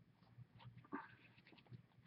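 Near silence: room tone with a few faint, short ticks and rustles.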